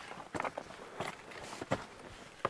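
Footsteps on loose stone rubble and gravel: about five uneven steps, with stones clicking and scraping underfoot.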